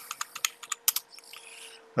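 Computer keyboard being typed on: a quick run of key clicks in the first second, with a few fainter clicks after. A new stock ticker symbol is being entered.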